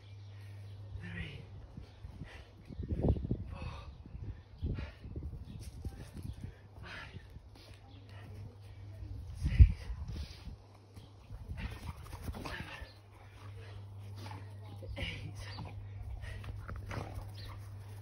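A dog whimpering at irregular intervals over a steady low hum, with one sharp thump about ten seconds in.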